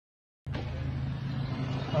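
Silence, then about half a second in, the steady low hum of a car's engine and road noise heard from inside the cabin.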